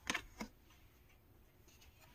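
Two brief clicks close together near the start as a tarot card is handled and laid onto a pile of cards.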